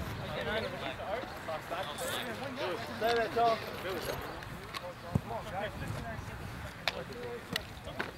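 Men's voices talking and calling out on an outdoor sports field between plays. From about five seconds in, three or four sharp clicks are heard.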